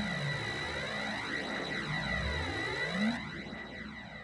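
Electronic dance music breakdown in a DJ mix: a hissing synth wash with a filter effect sweeping up and down over and over, with little bass, fading down toward the end.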